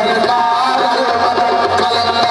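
Live qawwali: harmoniums holding steady drone chords under male voices singing, with a low tabla bass coming in about a second in.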